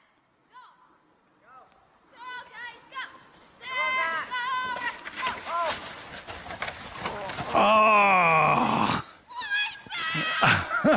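Children's high, distant shouts and calls, a few short ones at first and more from about two seconds in, then one long, loud, wavering yell near the end.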